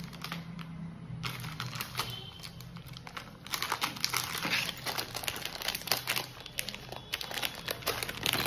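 Thin plastic packaging pouch crinkling and rustling in irregular bursts as hands work it open, busiest in the second half.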